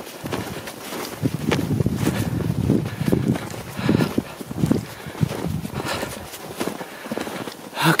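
Footsteps crunching through snow at a walking pace, about two steps a second.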